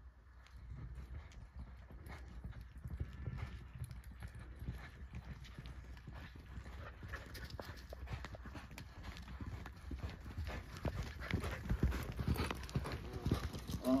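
Hoofbeats of a buckskin Quarter Horse mare moving at a steady pace, a continual run of hoof strikes that grows louder in the last few seconds.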